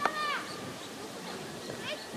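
Juvenile little grebe calling: a sharp click at the start, then one arched, whining call of about half a second, and a couple of short rising calls near the end.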